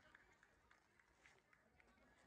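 Near silence: faint outdoor room tone with a few faint, scattered ticks.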